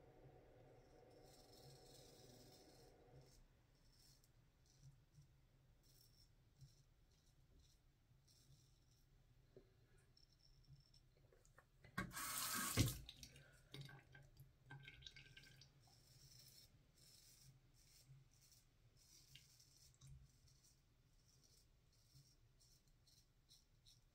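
Mostly near silence, with faint scratches of a Feather SS straight razor drawn through lathered stubble. About twelve seconds in, tap water runs at the sink for about a second.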